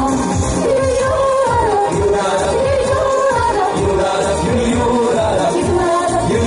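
A pop-style song sung live into microphones, with the melody line moving between held notes, over an accompaniment with a steady beat.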